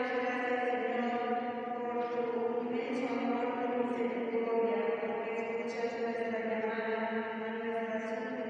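Slow religious chant sung in long held notes, each pitch sustained for a second or more before moving on.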